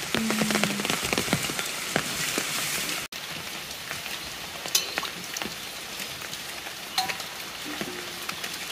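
Steady rain pattering on wet ground. After a cut about three seconds in, steel plates are scrubbed by hand over a steel basin, with a few light metallic clinks over the rain.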